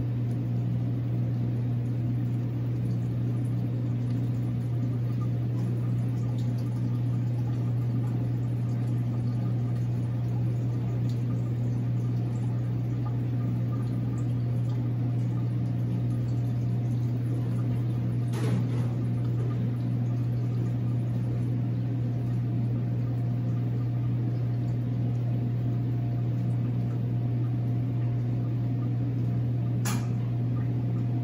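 Large floor-standing planetary mixer running steadily at low speed, its paddle beating thin cheesecake batter in a steel bowl: an even motor hum, with a single click about 18 seconds in.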